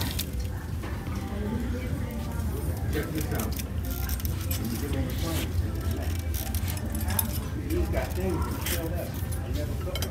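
Shop ambience: faint background music and distant chatter over a steady low rumble, with a few light clicks and rattles from handling goods and the shopping cart.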